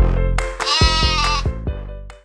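Bouncy background music with a regular beat, over which a cartoon sheep's "baa" bleat sound effect sounds once, wavering, about a second in.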